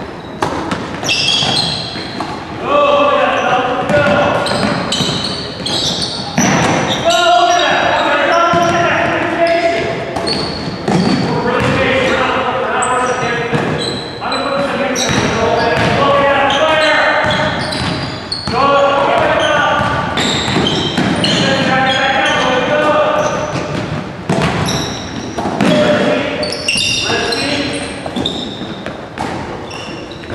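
Basketball bouncing on a hardwood gym floor, with players' voices calling out during play, all echoing in a large hall.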